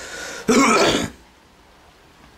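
A man draws a breath and clears his throat once, about half a second in.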